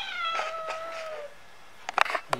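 Domestic cat meowing once: a single drawn-out meow that slides down in pitch and fades after just over a second.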